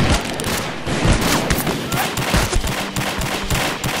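Shootout gunfire from handguns: rapid, overlapping shots, several a second, with no pause.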